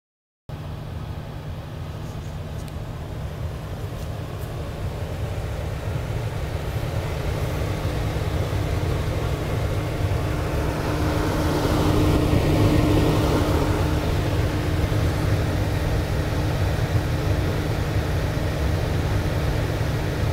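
Lincoln 1116 conveyor pizza ovens running while heating up: a steady low mechanical hum from the oven blowers and conveyor drive, growing gradually louder, with a faint steady tone joining in around the middle.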